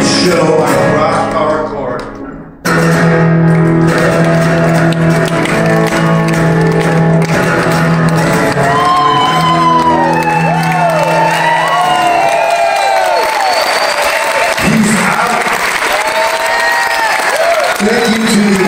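Live acoustic guitar and male singing, settling into a long held chord, with whoops and cheers from the people on stage over it and clapping as the song ends.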